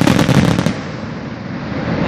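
Aerial firework shell bursting: a loud bang at the start, then a quick run of sharp crackling reports from its stars over the first second, dying away after.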